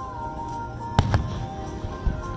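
Two sharp firework bangs in quick succession about a second in, from aerial shells bursting, over continuous music carrying a held melody line.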